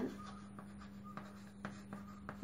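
Chalk writing on a chalkboard: a few faint short taps and scrapes as letters are written, over a steady low hum.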